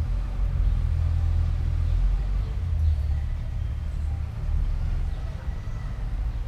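A low rumble of passing motor traffic, strongest in the first few seconds and easing off after.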